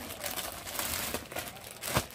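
Plastic garment packaging crinkling and rustling as a folded kurti is handled and taken out by hand, with irregular crackles and a sharp snap near the end.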